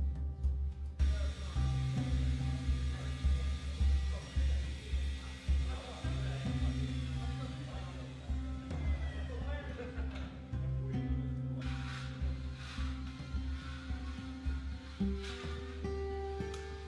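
Background music with a steady low bass line and beat.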